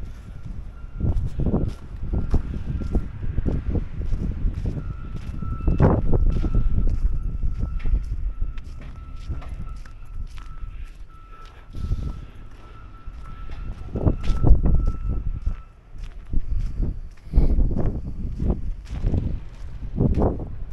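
Wind buffeting the microphone in gusts, with footsteps in snow. A steady high-pitched whine from an unseen source runs underneath and stops about three-quarters of the way through.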